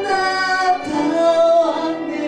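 A live song: a voice singing held notes that shift to a new pitch about a second in, over acoustic guitar accompaniment.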